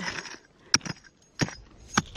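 Hand digging tool striking dry, stony soil: three sharp strikes a little over half a second apart.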